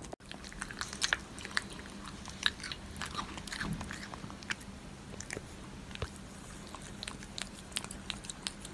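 A cat chewing and eating wet food, with irregular wet smacking and clicking chews throughout.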